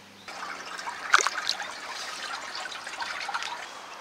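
Water splashing and trickling, with a sharper splash about a second in.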